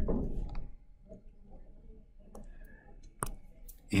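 A few faint, sharp clicks at uneven intervals: a stylus pen tapping on a touchscreen while a guide line is drawn along an on-screen ruler.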